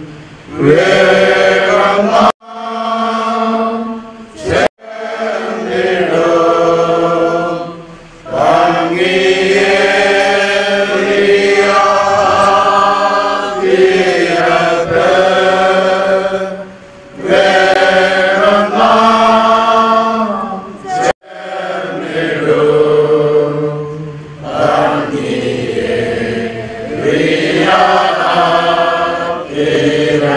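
A group of mourners singing a slow hymn together, long held notes in phrases of several seconds with short pauses between them. The sound cuts out abruptly for an instant three times.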